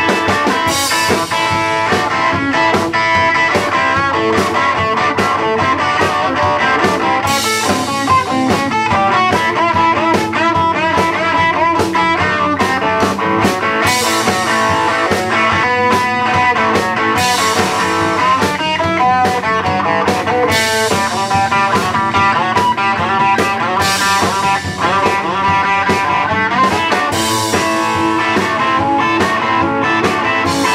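Live rock band playing an instrumental stretch with no singing: electric guitar lead with bending notes over bass and a steady drum beat with cymbal crashes.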